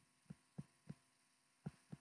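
Near silence with about six faint, soft taps at uneven spacing: a stylus tapping on a tablet's touchscreen while writing by hand.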